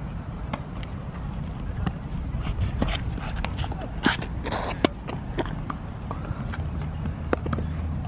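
Tennis ball being served and rallied on an outdoor hard court: sharp pops of racket strikes and ball bounces, spaced irregularly about a second apart, the loudest about four seconds in. Under them runs a steady low rumble.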